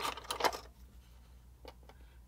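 Small tools being handled on a workbench: a short cluster of light clicks and taps in the first half second, then quiet with one faint tick near the end.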